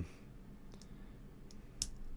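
Small plastic Lego pieces being handled and pressed together: a few faint clicks, the sharpest near the end.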